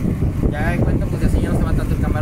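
Steady low rumble of a small open launch under way, its motor mixed with wind buffeting the microphone, and a voice speaking briefly over it about half a second in.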